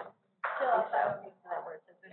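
People talking in conversation, with a person clearing their throat about half a second in.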